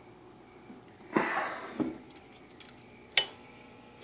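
Quiet room with a short breathy sound about a second in and a single sharp click a little after three seconds.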